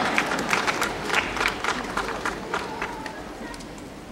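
Theatre audience applauding and cheering, a mass of scattered claps that thins out and fades over the last second or so.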